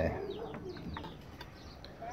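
Faint bird chirps: a few short, high calls in the first second over quiet background.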